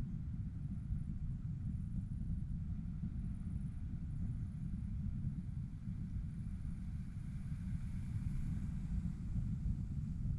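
Airflow buffeting a harness-mounted action camera's microphone in flight under a tandem paraglider: a steady low rumble.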